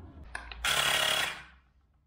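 Short burst of high-pressure air hissing out at a road bike tyre's Presta valve as a pump's screw-on hose chuck is turned onto it, lasting under a second after a small click. The hiss is the chuck pressing the valve open so the tyre's air reaches the pump's gauge, which then reads the tyre pressure.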